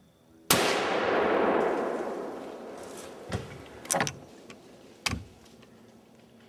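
A single gunshot about half a second in. Its report rolls on and fades away over two to three seconds. A few short, sharp knocks follow later.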